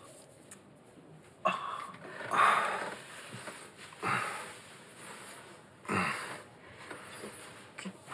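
A woman sobbing, in several separate sobs and gasping breaths a second or two apart.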